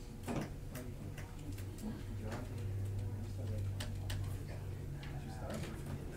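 Classroom background while students work: faint, indistinct voices, scattered irregular clicks and taps, and a low steady hum that swells in the middle.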